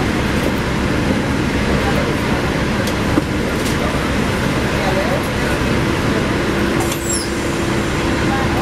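Interior of a 2009 NABI 40-SFW transit bus standing with its engine running: a steady rumble and hum. A droning tone steps up to a higher pitch about six seconds in.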